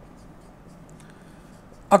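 Marker pen writing on a whiteboard: a faint run of short scratchy strokes.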